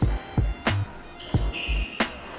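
Background music with a steady beat, over the sharp knocks of a squash ball being struck and hitting the walls during a rally.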